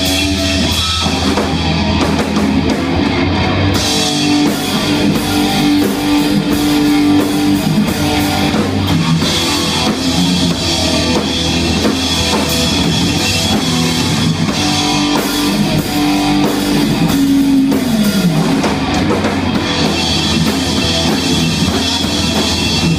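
Live crust-punk/thrash band playing loud: distorted electric guitars and bass over a drum kit. A held note slides down in pitch about three-quarters of the way through.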